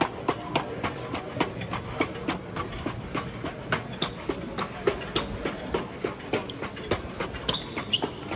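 ARTEMIS bipedal humanoid robot walking fast on a hard stone floor: a rapid, uneven clatter of sharp footfalls, several a second. The shoes of people walking beside it are mixed in.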